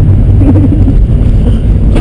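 Steady low rumble of a moving car heard from inside the cabin, with a short, faint voice about half a second in.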